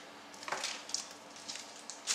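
Faint rustle of trading-card packets and cards being handled, one brief rustle about half a second in and a few light ticks later.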